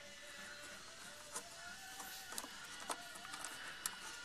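Faint, scattered light clicks of a plastic cruise control throttle bracket being handled and pressed onto the throttle body cam by hand, over a faint wavering tone.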